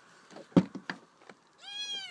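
A sharp knock about half a second in and a couple of lighter taps, then near the end one high cry from a young animal that rises and falls in pitch.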